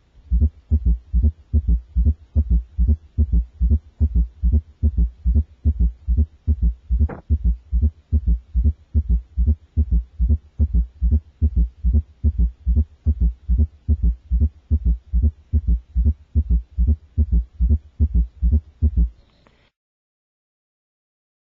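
A child's heart heard through a stethoscope in quadruple rhythm: all four heart sounds, S1, S2, S3 and S4, in each cycle, as a steady run of low, dull thuds. A single sharp click comes about seven seconds in, and the heart sounds stop about a second before the end.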